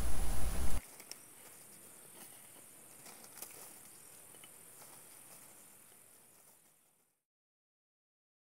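A short burst of loud noise that cuts off abruptly under a second in, then near silence with a couple of faint clicks, fading out to complete silence.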